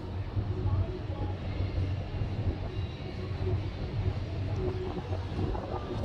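Wind buffeting the phone's microphone, a steady low rumble with a faint hiss over it.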